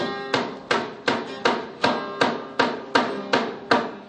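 Background music: an acoustic guitar strummed in hard, evenly spaced chord strokes, about eleven in four seconds.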